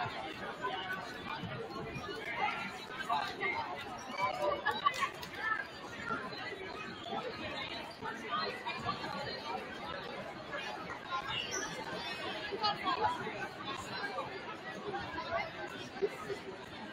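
Indistinct chatter of spectators talking in the stands of a gymnasium, with many voices overlapping and no single voice standing out.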